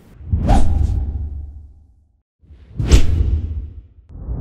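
Two whoosh sound effects from an end-card logo animation, each a rising swish with a low rumbling tail that fades away, the second coming about two and a half seconds after the first.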